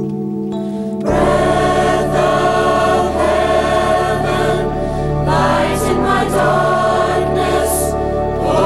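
Youth choir singing with instrumental accompaniment; about a second in, a deep bass comes in and the sound grows fuller.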